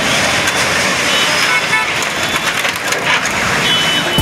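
Noisy street sound at a demolition site: a crowd's many voices over heavy machinery, with a few sharp knocks.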